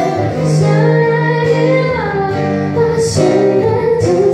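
A woman singing long held notes into a microphone, with an acoustic guitar accompanying her. The sung note shifts pitch about halfway through, and a sharp 's' sound comes near the end.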